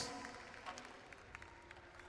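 Faint arena background noise, an even hiss with a few soft ticks, as the commentator's voice dies away at the start.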